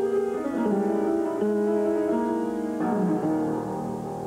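Solo acoustic piano playing a slow melodic passage, single notes and chords held and changing about every half second. About three seconds in a fresh chord is struck and then dies away.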